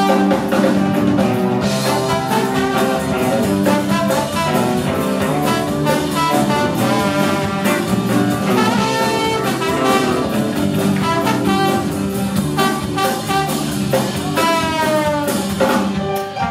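Live band playing, with a trombone solo carried over drums, bass and keys. Near the end a note slides upward.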